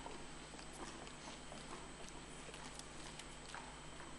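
Faint room tone of a large hall with a few scattered light clicks and taps.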